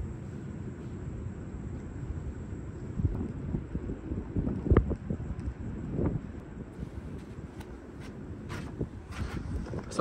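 Wind buffeting the microphone: an uneven low rumbling rush. A few short knocks break through, about three, five and six seconds in.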